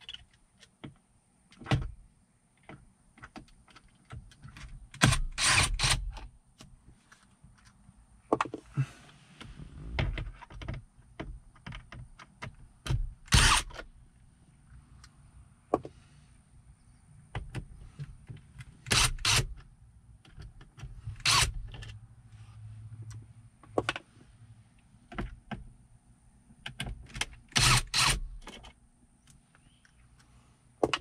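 Cordless drill-driver running in several short bursts, a few seconds apart, as it backs out the Phillips screws holding a car stereo head unit. Clicks and knocks of the bit and tool come between the bursts.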